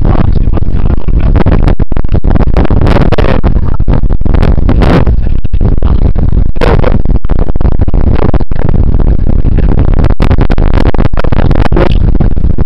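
Wind buffeting and handling noise on a handheld camera's microphone, overloaded into a steady distorted roar broken by many short dropouts.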